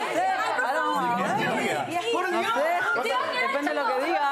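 Several people talking excitedly over one another: overlapping chatter of a group of voices.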